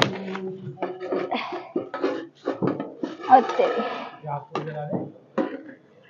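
Talking voices that the recogniser did not transcribe.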